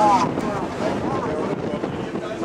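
Wind rushing over the microphone on the open deck of a sailing ship under way. Indistinct voices come through the wind, most clearly at the start.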